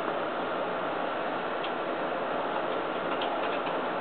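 Steady background hiss with a few faint, scattered clicks of small plastic action-figure parts being handled.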